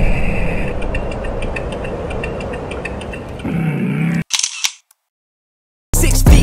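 Edited-in transition sound effect: a boom fading away with faint ticking, then a short low sweep and a few sharp clicks, cutting off suddenly about four seconds in.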